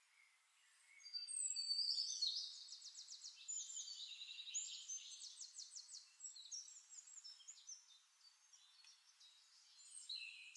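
Songbirds singing: rapid high trills and chirps start about a second in and are loudest in the next couple of seconds. They carry on more softly to the end.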